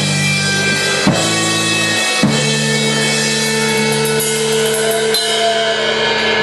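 Live punk rock band playing: bass and guitar hold ringing chords while the drum kit hits cymbal crashes on the accents, about four times.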